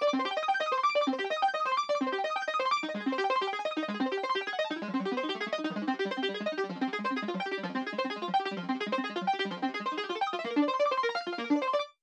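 Alchemy synth lead in Logic Pro X playing a fast sixteenth-note arpeggio of four-note chords. Each note is followed by a quieter 32nd-note repeat an octave higher, giving "a little glassy echo going up."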